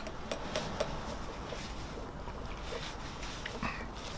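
Sipping a cold drink through a stainless-steel straw from a plastic lidded cup: a quiet steady suck with a scattered series of small metallic clicks and clinks of the straw in the cup.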